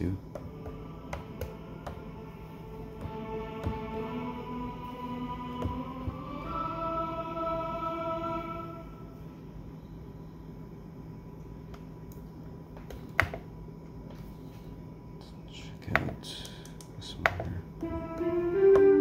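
Akai MPC Mellotron plug-in playing its tape-sampled violins preset: several sustained notes layered and stepping upward in pitch, fading out about nine seconds in. A few sharp taps of the MPC's pads and buttons follow, in a quieter stretch.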